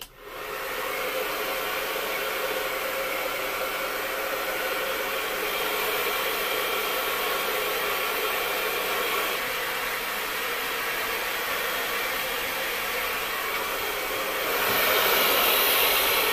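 Handheld hair dryer switched on and running steadily, blowing over wet hair in a quick rough-dry. It gets louder and brighter for the last second or so.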